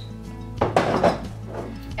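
A short clatter of glass jars and loose seeds being handled, starting about half a second in and lasting under a second, over acoustic guitar background music.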